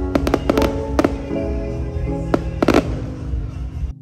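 Fireworks going off in the air with a string of sharp bangs: a quick cluster in the first second and another burst of bangs about two and a half seconds in. Background music plays under them, and both cut off abruptly just before the end.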